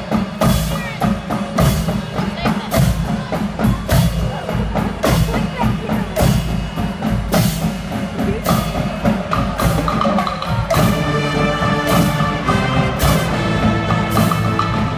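Pep band playing: a steady drum beat on snare and bass drums, about two strikes a second, with the brass and saxophones coming in on held notes about nine seconds in and swelling a couple of seconds later.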